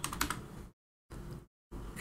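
A few quick clicks of computer keys, as a new segment count is typed into a modelling program, with the sound gated to dead silence between them.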